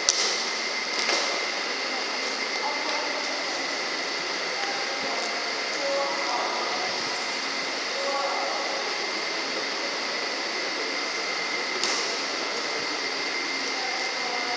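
Badminton racket striking a shuttlecock: a sharp smack from an overhead smash at the very start, another hit about a second later and a third near the end, over a steady fan hum.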